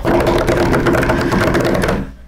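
A drum roll played with hands on a wooden tabletop: a fast, even patter of slaps that runs without a break and then stops.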